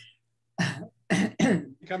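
A person clears their throat once, about half a second in, followed by speech.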